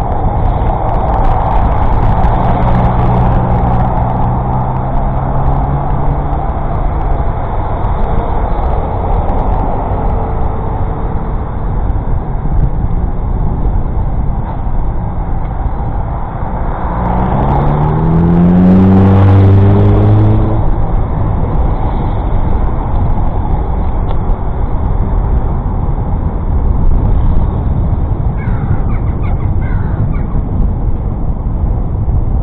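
Wind rushing over the microphone of a bike-mounted camera, with road noise, while riding a Brompton along a park road. Motor vehicles pass on the road beside: a low engine tone early on, then a louder engine rising in pitch about two-thirds of the way in. A few short bird calls near the end.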